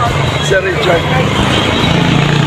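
Steady low drone of motor-vehicle engines on the road, with a few brief voices of people close by.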